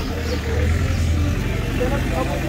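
Street ambience: people talking over a steady low rumble that drops away about a second and a half in.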